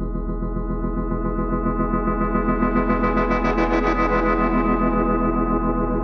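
Experimental ambient music: a sustained drone of layered held tones over a steady low hum, pulsing quickly and evenly, swelling brighter toward the middle and easing back near the end.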